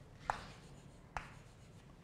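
Chalk writing on a blackboard: two sharp taps of the chalk about a second apart, each trailing off in a short scrape.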